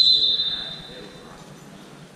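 Referee's whistle blown once to start the wrestling period: a single high, shrill tone that starts sharply and fades away over about a second and a half.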